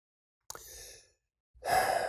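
A man breathing between sentences: a faint short breath about half a second in, then a louder in-breath near the end, just before he speaks again.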